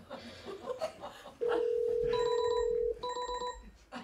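A phone ringing: a steady electronic tone starting about a second and a half in and held for about a second and a half, then a second, shorter tone.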